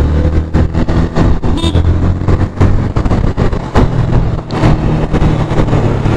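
Yamaha FZ-V3's single-cylinder engine running steadily while the motorcycle rides through traffic, its pitch shifting slightly a couple of times. Irregular wind buffeting on the microphone runs over it.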